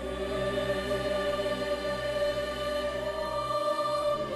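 Choir and orchestra performing together, the voices holding long sustained notes, with the chord changing near the end.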